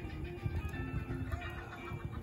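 Quiet background music with a few held tones.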